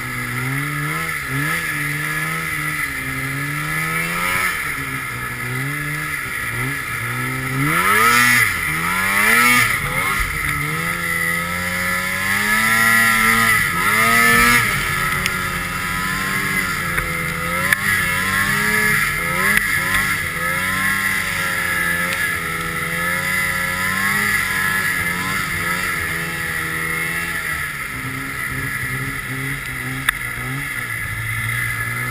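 Two-stroke Polaris RMK snowmobile engine running under constantly changing throttle: its pitch rises and falls again and again, with hard revs climbing steeply about eight seconds in and again around the middle.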